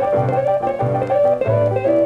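Instrumental fill of a 1940s Chicago blues band between sung lines, played from a 78 rpm shellac record: a held, slightly wavering harmonica note over piano, guitar and plucked string bass notes.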